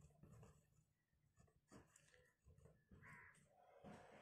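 Near silence, with faint scratches and ticks of a pen writing on paper.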